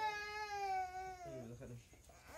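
Toddler crying: one long, high wail that falls slightly in pitch and breaks off a little past halfway, followed briefly by a deeper adult voice.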